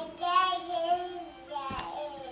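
A baby vocalizing in a high, drawn-out voice: one long sound of about a second, then a second, shorter one near the end.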